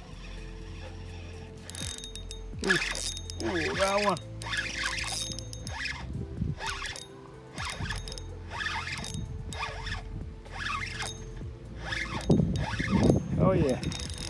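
A fishing reel being cranked as a hooked fish is brought in against a bent rod: a run of short, scratchy bursts about every half second to a second, with a few brief squealing glides.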